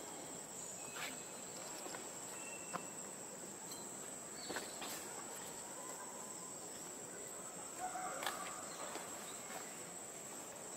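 Steady high-pitched insect chorus of the forest, with a few faint clicks and a brief mid-pitched sound about eight seconds in.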